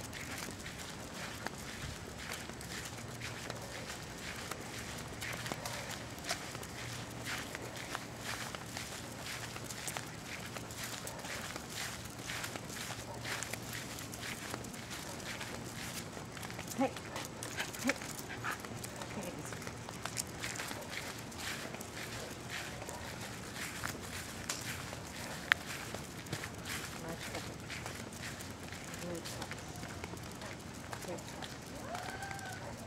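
Walking sounds of a person and two Jack Russell terriers on a concrete sidewalk: a constant patter of small clicks and steps over a low steady hum, with a few louder, sharper clicks in the second half.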